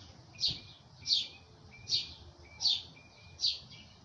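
A bird calling over and over: a short high chirp falling in pitch, repeated evenly about every three-quarters of a second, five times or so.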